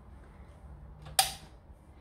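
A single sharp click about halfway through, as a countertop oven is handled to be switched on for preheating.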